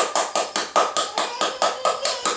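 Hands rapidly tapping and squeezing an upside-down plastic yogurt cup to knock the yogurt out into a plastic bowl: a fast, even run of sharp taps, about five or six a second.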